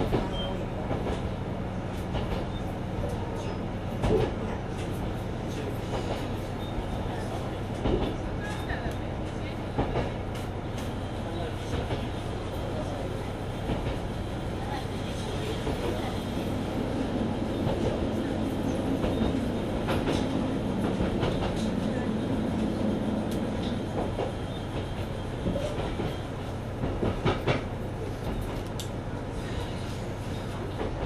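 Mizushima Rinkai Railway MRT300 diesel railcar running, with a steady low engine hum and occasional sharp clicks of the wheels over rail joints. The engine note grows louder through the middle and then settles again.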